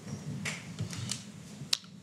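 A few faint, sharp clicks over a low room murmur, the sharpest one near the end.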